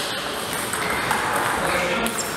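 Celluloid-type table tennis ball clicking off bats and the table during a rally, with a small spike about a second in.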